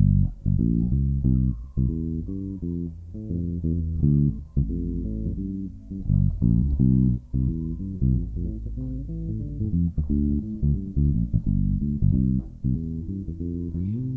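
Electric bass guitar playing a reggae bassline as a steady run of single plucked notes, strung with old strings that make its tone sound funny.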